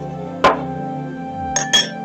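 Metal spoon clinking against a bowl: one sharp clink about half a second in and two quick clinks near the end, over background acoustic guitar music.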